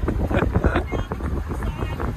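Strong wind buffeting the microphone in a low rumble, with a person laughing at the start.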